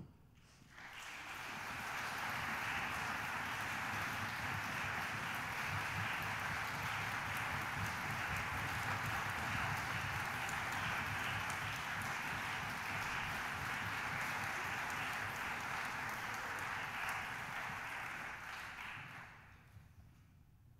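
Audience applauding, rising within the first second, holding steady, and dying away just before the end.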